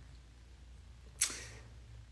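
A single short, sharp breath, a quick exhale like a half-laugh, about a second in, over a faint steady low hum.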